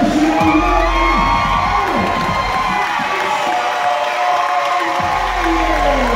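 Arena crowd cheering and shouting, with music playing.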